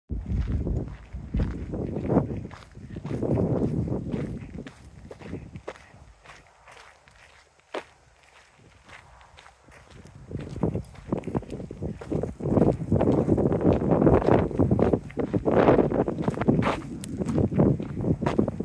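Footsteps of several people walking on a dirt trail, irregular and close to the microphone, quieter for a few seconds in the middle and heavier again in the second half.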